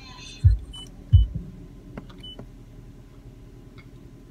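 Car cabin with a steady low hum, as from the idling engine, while the CD music drops out. Two dull low thumps come close together near the start, followed by a few short high beeps and a couple of light clicks.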